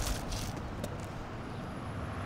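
Honor guard's feet scuffing and clicking on grass as the detail turns on a right-face command: a few short soft clicks in the first half second and one more near the middle, over a low steady rumble.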